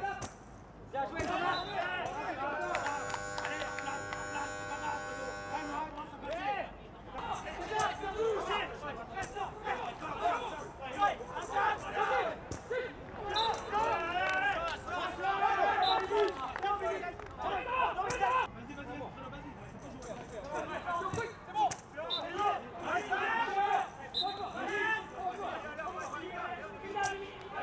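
Voices shouting and calling out across a blind football pitch, with scattered sharp knocks of the ball being played. A steady pitched tone is held for about three seconds near the start.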